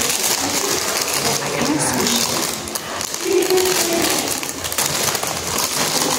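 Paper wrapping and a paper bag crinkling and rustling as a sandwich is unwrapped by hand, a dense run of small crackles, with some speech mixed in.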